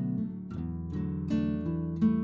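Background music of a plucked acoustic guitar, with notes and chords picked about every half second and left to ring.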